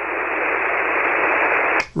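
Steady hiss of HF band noise through a ham radio receiver's SSB filter, heard in the gap between the two stations' overs, cutting off abruptly near the end.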